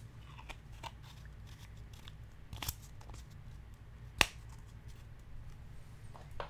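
Scattered light clicks and taps of small objects being handled on a work surface, with one sharp click a little past four seconds in, over a low steady hum.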